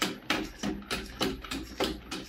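Xiaomi CyberDog 2 robot dog's feet tapping on a tiled floor as it steps in place, an even series of sharp taps about three a second, with a low hum underneath.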